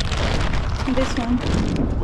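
Wind buffeting the microphone, a steady rumbling with a short bit of a person's voice about a second in.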